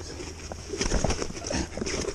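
A pike thrashing on a plastic unhooking mat laid on grass: a string of irregular thumps and rustles of the mat.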